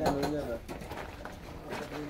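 Indistinct voices, with short pitched calls near the start and again near the end.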